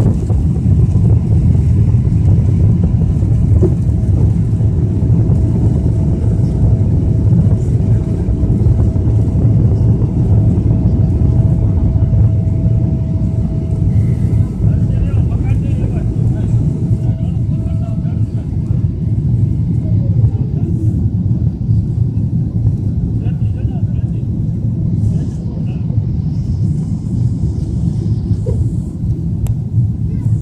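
Boeing 777-300ER's GE90 turbofan engines at takeoff thrust, heard inside the cabin as a loud, steady low rumble through liftoff and initial climb, easing slightly in the last third. A faint steady whine rides above it and slides down in pitch about two-thirds of the way through.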